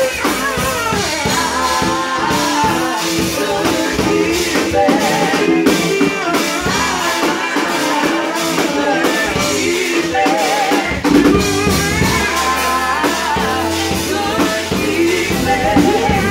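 Live old-school gospel music: a small vocal group singing into microphones over a drum kit and band. The bass and drums thin out for a stretch, then come back in strongly about eleven seconds in.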